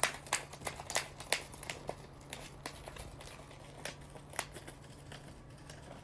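A lovebird snipping and tearing at a sheet of paper with its beak: a run of sharp, crisp clicks and crinkles, busy in the first two seconds and sparser after. It is cutting strips for nest material, the kind it tucks into its rump feathers.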